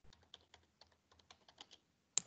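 Near silence with faint, irregular computer-keyboard typing clicks.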